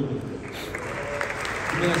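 Indoor audience applauding, the clapping building about half a second in.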